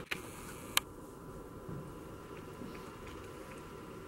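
Quiet room tone with a faint steady hum, broken by two short clicks in the first second, the second one sharp and the loudest.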